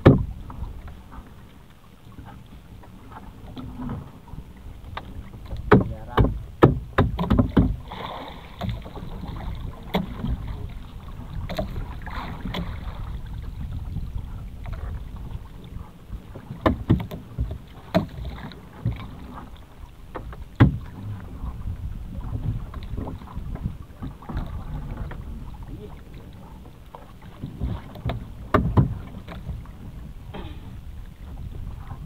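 Small fishing boat at sea: irregular knocks and clatter against the boat, with a cluster of them a few seconds in, over a steady low rumble of wind and water.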